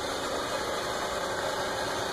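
A small motor running with a steady, unchanging hum.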